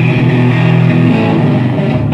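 Live rock band playing loud, the electric guitars and bass holding sustained notes.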